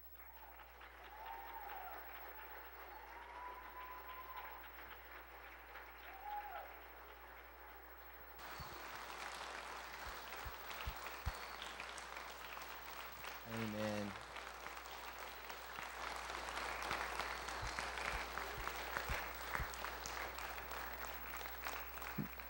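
A church congregation applauding, the clapping swelling about eight seconds in, with a few voices calling out over it.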